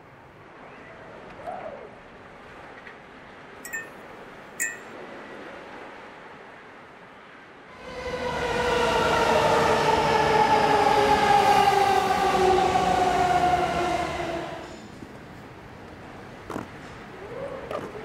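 A train passing on an elevated railway, starting about eight seconds in and lasting some seven seconds: a loud rush with a whine of several tones slowly falling in pitch, then fading away.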